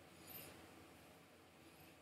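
Near silence: room tone, with one faint, short sound about a third of a second in.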